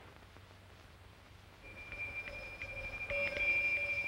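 A small hand bell ringing, starting about a second and a half in, with a steady high ring and a few light clapper strikes, growing louder toward the end.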